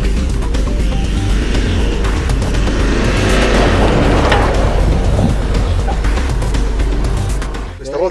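Background music over a Subaru SUV with a four-cylinder boxer engine driving through a snowy cone slalom. Its engine and tyre noise builds about halfway through as it comes close, then fades.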